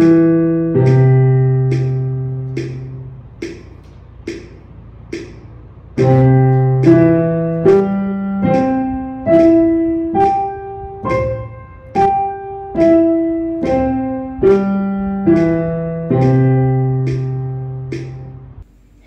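Piano playing a C major arpeggio over two octaves, one note to each click of a metronome set to 72 (about 0.8 s apart). The left hand ends on a long low C held for about two seconds, and for a few seconds only the metronome clicks. Then both hands play the arpeggio up and back down together, ending on a held C near the end.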